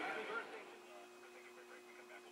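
A faint tail of a man's voice in the first half-second, then near silence with a faint steady hum.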